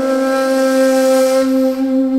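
Music: a breathy wind instrument holding one long, low, steady note.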